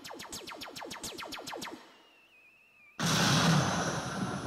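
Electronic sound effects from an animated web demo over the hall's speakers: a quick run of falling-pitch blips, about nine a second for two seconds, a faint wavering high whistle, then about three seconds in a sudden loud noisy burst like an explosion that slowly dies away.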